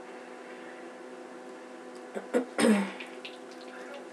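A woman with a cold makes two quick catches of breath followed by one loud, short burst from the nose and throat whose pitch falls away, over a faint steady background hum.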